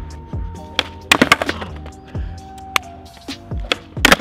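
Background music with sustained synth tones and deep falling bass notes, over a few sharp clacks and taps clustered a little after one second.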